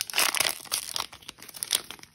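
Plastic wrapper of a baseball card pack being torn open and crinkled in the hands: dense crinkling with sharp crackles, strongest at first and dying down toward the end.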